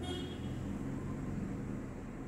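A steady low hum in the background, with a faint short high tone at the very start.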